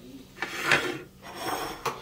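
Plates being slid and set down on a kitchen countertop: two rough scraping sounds, the first louder.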